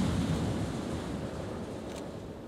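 The low rumbling tail of a large pyrotechnic explosion, dying away steadily, with flames burning on.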